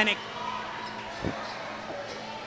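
A basketball bounced once on the court, a single dull thump about a second in, as the shooter dribbles before a free throw.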